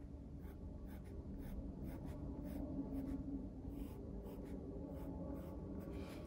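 Pencil scratching on textured cold-press watercolour paper in a string of short, quick strokes, faint but clear.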